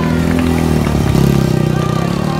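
Motorcycle engine held at high revs while the bike is spun around on dirt, with music playing over it.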